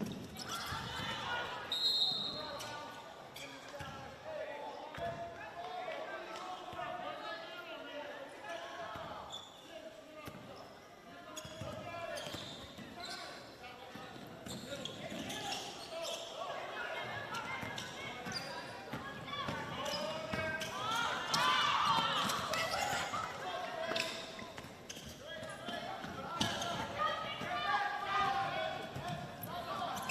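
Basketball game sound in a large gym: a ball dribbling on the hardwood court amid indistinct voices of players, bench and spectators, with short sharp knocks and footfalls from play.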